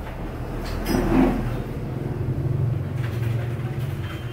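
A steady low hum, like an engine running somewhere, that is strongest in the second half, with a short rustling burst about a second in.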